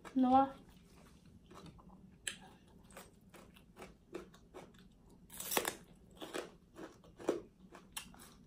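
Close-miked chewing of a mouthful of papaya salad: wet mouth clicks and smacks, with one louder crunch about halfway through.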